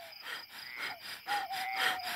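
Night forest sound effect: crickets chirping in a steady, rapid pulse, with an owl giving one long hoot about a second and a half in.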